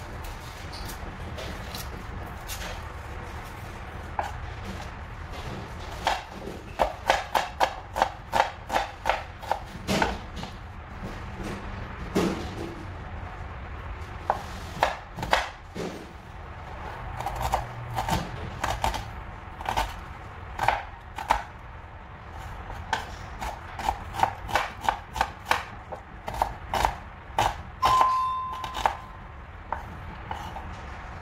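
Kitchen knife chopping onion on a wooden cutting board: runs of quick knocks, about three or four a second, broken by short pauses.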